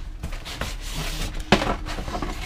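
Empty cardboard console boxes rustling as they are handled and shifted inside a larger cardboard box, with a sharp knock about one and a half seconds in as a box strikes the others.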